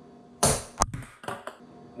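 A golf club chips a ping pong ball, then the light plastic ball clicks a few times as it lands and bounces on the hard floor, the first click sharp and the rest fainter.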